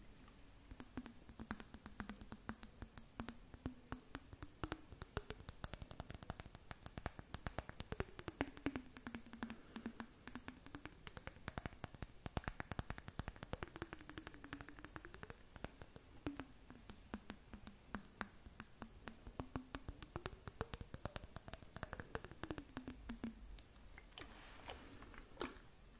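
Long fingernails tapping and clicking rapidly on a glass jar full of blue glitter. Under the taps, a faint low hollow tone slides down and back up about every four seconds as the jar is tilted.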